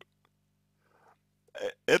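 A man's speaking voice pausing into near silence, with one faint short noise about a second in; his voice starts again near the end.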